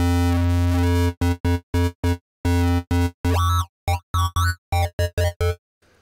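Vital software synth playing a distorted FM wavetable bass ('Hollow Distorted FM'). It holds one low note for about a second, then plays a run of short stabbed notes, some warbling and bending in pitch, and stops just before the end.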